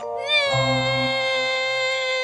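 A long, high, drawn-out vocal cry that slides up at the start and is then held on one pitch, over background music.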